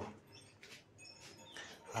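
Faint animal calls: a few short, high chirps over quiet room tone.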